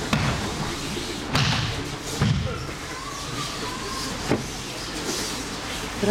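Thuds of people being thrown and breakfalling onto dojo training mats in aikido practice, about four separate impacts over a steady hall noise.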